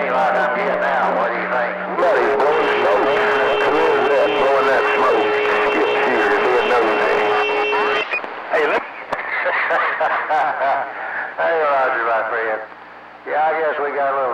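CB radio receiver audio: distant skip voices on the channel, garbled and talking over one another. From about 2 to 8 s a hissier signal comes in, carrying steady heterodyne whistles. There is a brief gap near the end.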